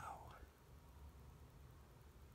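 A softly spoken man's "wow" trailing off in the first half second, then near silence: room tone with a faint low hum.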